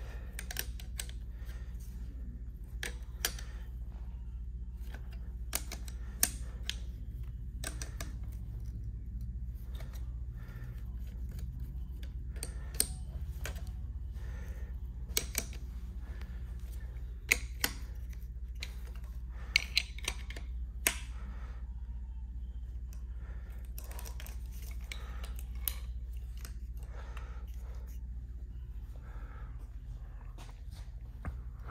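Scattered light metallic clicks and taps, some in quick clusters, as a wrench works high-pressure fuel line fittings onto an engine's fuel rails, over a steady low hum.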